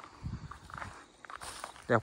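Soft, irregular footsteps and faint rustling from someone walking outdoors with a handheld camera. A voice says one word at the very end.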